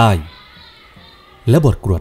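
A man's voice narrating in Thai, breaking off for about a second in the middle, with faint sustained tones carrying on underneath through the pause.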